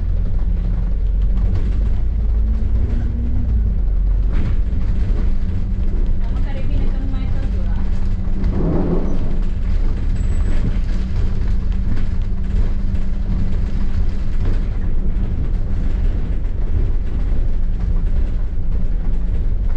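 Double-decker bus engine and road noise heard from inside the bus, a steady low rumble as it drives along. A brief voice is heard about halfway through.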